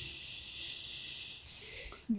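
A person sniffing a hookbait through the nose: one long drawn-in breath lasting over a second, then a shorter breath near the end.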